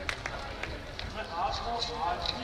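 Audience applause dying away to a few last scattered claps, followed about a second in by faint talking in the background.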